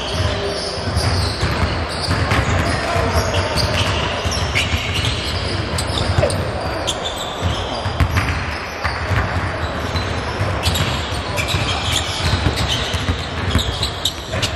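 A basketball being dribbled on an indoor hardwood court, a string of sharp bounces echoing in a large gym, over the chatter of people talking in the background.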